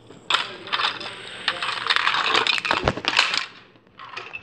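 Plastic Lego bricks clattering and rattling as they are handled and shuffled on a baseplate: a dense run of clicks starting just after the beginning and dying away about three and a half seconds in.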